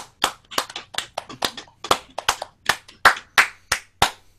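A person clapping hands in applause, evenly at about three claps a second, stopping near the end.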